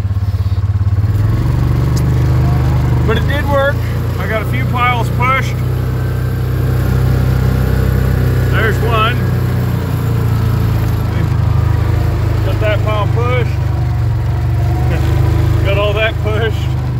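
Yamaha Rhino UTV's single-cylinder engine running loud and steady as the machine drives forward, heard from the driver's seat.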